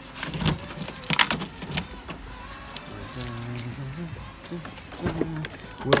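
A bunch of car keys jangling and clicking against the tailgate lock of a Honda hatchback, which isn't working. The clicks come mostly in the first two seconds, with a few more sharp knocks near the end.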